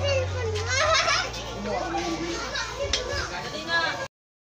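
Several children's voices talking and calling out at once, high and overlapping, over a steady low hum.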